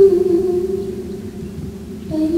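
A singing voice holding one long note that slides slightly lower and fades out near the end, from a film soundtrack played over the lecture hall's speakers.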